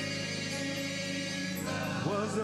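Gospel music: choir and keyboard hold one steady chord, then a single voice comes back in with a wavering sung line near the end.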